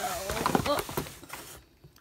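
A woman's voice exclaiming briefly, with a few light knocks from items being handled.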